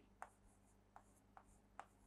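Marker pen writing on a whiteboard: a few faint, short strokes, about four in two seconds.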